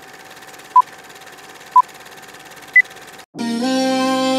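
Film-leader countdown sound effect: a steady fast projector rattle with three short beeps a second apart, the first two at one pitch and the third higher. It cuts off just after three seconds and music with a held chord begins.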